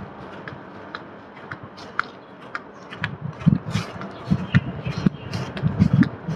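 Walking and handling noise from a phone carried across a dry lawn: scattered light clicks and crackles, then from about halfway in, irregular low thuds of footsteps, roughly two a second.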